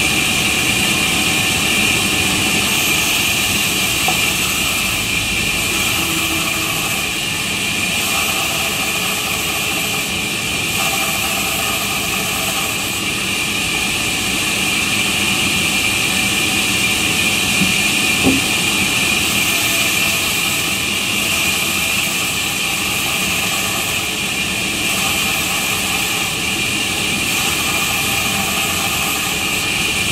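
Large sawmill band saw running steadily with a constant high whine as a log is fed through the blade and sawn lengthwise. There is one brief knock about eighteen seconds in.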